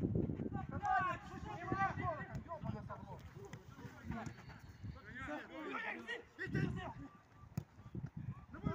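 Footballers shouting and calling to each other mid-play, with the patter of running feet and knocks of the ball on the pitch.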